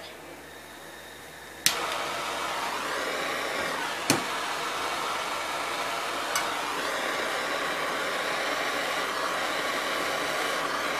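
Handheld gas torch lit with a sharp click a little under two seconds in, then burning with a steady hiss as its flame heats a steel lantern fuel tank for soldering. Two short clicks sound partway through.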